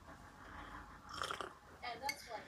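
Faint mouth sounds of a person drinking from a mug: soft sips and swallows that come a little after a second in.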